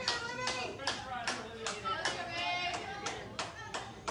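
People clapping in a steady rhythm, roughly three claps a second, with several voices calling out over the claps.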